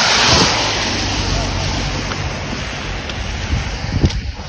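Wind blowing over the phone's microphone outdoors in the snow: a loud, steady rushing noise, strongest at the start and easing a little, with a sharp knock at the very end.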